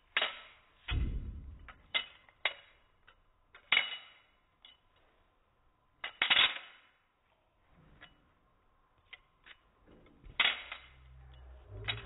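Balisong (butterfly knife) being flipped: its metal handles and blade clicking and clacking against each other in sharp, irregularly spaced clacks, a few of them louder with a brief ring.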